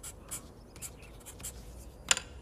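Pen writing on paper: short, faint scratching strokes, a few each second.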